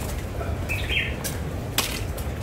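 A bird chirping, a short run of quick chirps just before the middle, over a low steady rumble. A single sharp tick comes near the end.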